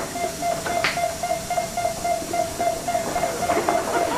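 A steady high electronic tone sounds throughout, like a medical monitor's continuous tone, over a faint hiss. Two brief knocks come near the start, about a second apart, as the swinging doors of the operating theatre are pushed open.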